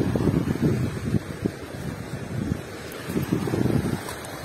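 Wind buffeting an outdoor phone microphone: an uneven, gusting low noise with irregular surges.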